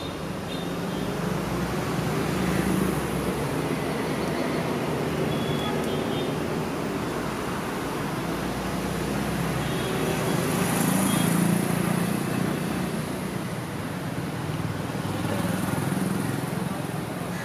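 Steady street traffic noise, with vehicles passing and the rumble swelling twice, about two seconds in and again near the middle.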